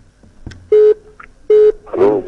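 Telephone line tone: two short, loud beeps a little under a second apart, each one steady pitch, coming through the studio's phone line.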